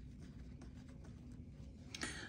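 Faint rustling and brushing of cloth as fabric strips and lace trim are handled and laid out on a tabletop.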